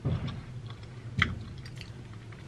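A person chewing a forkful of food close to the microphone, with a short sharp click about a second in.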